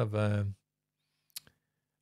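A man's voice trailing off, then a single short, sharp click about a second and a half in, with silence around it.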